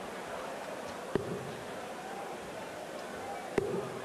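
Two darts striking a bristle dartboard, one about a second in and a louder one near the end, over a low steady murmur from the arena crowd.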